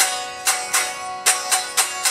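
Electric guitar tuned to drop C sharp, strumming the same chord in a quick rhythmic up-and-down pattern: about six strums in two groups, with a short break in the middle.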